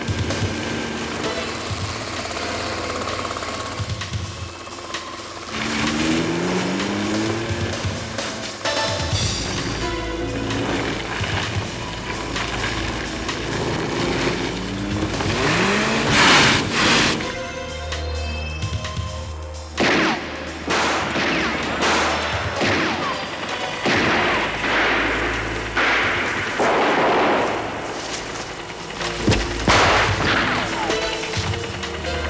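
Dramatic action music under a car chase, with a car driving fast and gunshots. The shots come sudden and close together in the second half.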